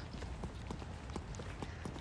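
Faint, irregular clicks and taps of footsteps and a handheld phone being handled while walking, over a low steady rumble of outdoor background.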